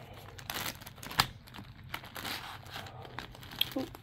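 Clear plastic bag crinkling as it is handled and opened, with one sharp click about a second in.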